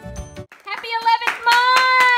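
Background music that cuts off about half a second in, followed by hand clapping in a steady rhythm of about three claps a second. A high voice holds a long sung note over the claps and slides down near the end.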